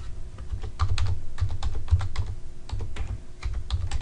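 Typing on a computer keyboard: an irregular run of key clicks, about a dozen keystrokes spelling out a short name.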